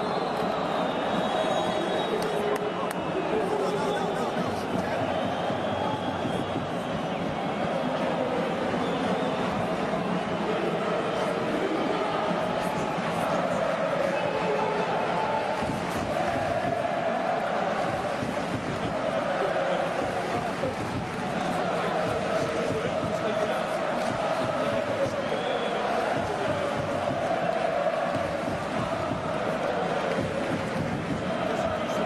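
Steady, indistinct babble of many voices from spectators and players along the sideline of a soccer field, with no single voice standing out.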